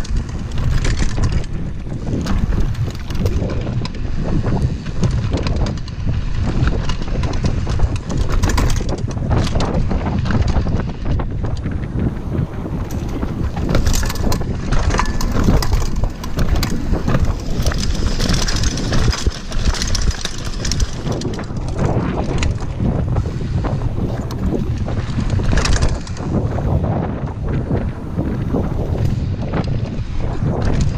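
Wind buffeting the camera microphone over the rumble and rattle of a mountain bike riding fast down a dirt forest trail, with frequent knocks as the bike hits bumps.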